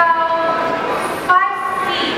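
A horn-like tone sounded twice: a long steady note of about a second, then a shorter one after a brief gap.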